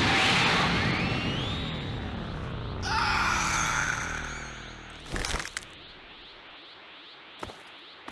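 Cartoon fight sound effects: a loud whoosh with a rising whine that fades away, a second swell about three seconds in, and a sharp hit about five seconds in, after which it goes much quieter.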